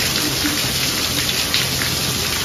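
Heavy rain pouring down, a steady hiss of many drops striking hard surfaces close by.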